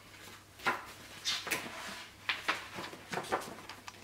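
Pages of a paperback book being flipped and its paper fold-out map opened out: a string of short paper rustles and crinkles.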